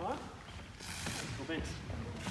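Mostly speech: a man's voice saying "try" at the start, then quieter voices and some soft hissy noises of movement.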